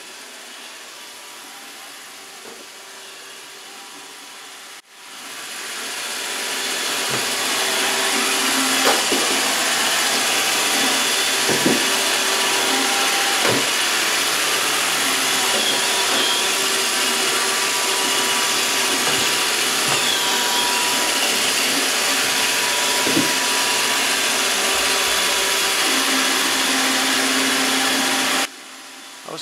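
iRobot Roomba 637 robot vacuum running on a wooden floor, a steady whir of its suction motor and brushes. It is quieter for the first five seconds, then grows louder and holds steady, with a few light knocks along the way.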